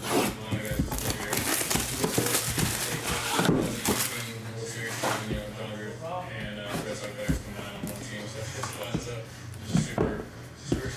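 Plastic shrink wrap crinkling and tearing as it is slit with a pocket knife and pulled off a cardboard trading-card box, busiest in the first few seconds. After that comes quieter cardboard handling with a couple of knocks as the box is set down and opened, over background music.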